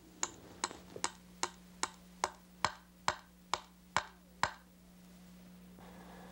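A knife striking a wooden board in an even rhythm, about a dozen sharp knocks a little over two a second, stopping about four and a half seconds in. A faint steady low hum runs underneath.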